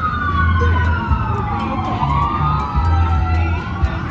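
Emergency vehicle siren wailing, its pitch sweeping slowly up and down over a low rumble.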